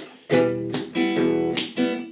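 Acoustic guitar strummed with the hand over the soundhole: a chord struck about five times in an uneven down-and-up strumming rhythm, each strum ringing on into the next.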